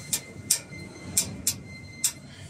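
Four light, sharp taps of a pen against the test bench's metal oil tank: two in quick succession at the start, two more a little past the middle.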